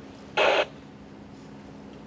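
A short burst of hiss, about a quarter second long, a little under half a second in, over a faint steady low hum.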